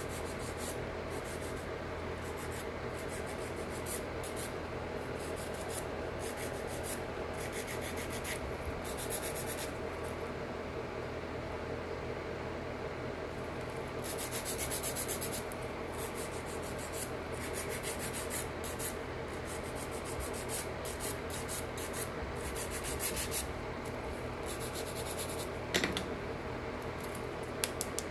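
Hand-held nail file rasping back and forth along the edges of long painted artificial nails, in runs of quick strokes with short pauses between them, over a steady low hum.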